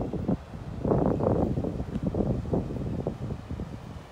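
Wind buffeting the phone's microphone in uneven gusts, a low, rumbling noise.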